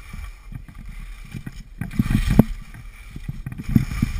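Skis scraping and chattering over packed snow during a downhill run, with wind buffeting the action camera's microphone. The scraping grows louder with knocks about two seconds in and again near the end.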